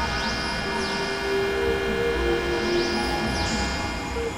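Experimental synthesizer drone music: a dense, steady chord of many sustained tones over a low rumble. A held mid-pitched note steps down about halfway through, and quick high sweeps glide up and down a few times.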